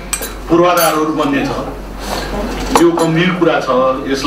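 A man speaking into a desk microphone, in short phrases with pauses, with light clinks of tableware, one sharp click just under three seconds in.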